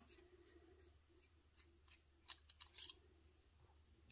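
Near silence: room tone with a few faint, brief clicks a little past halfway, from a fountain pen being handled.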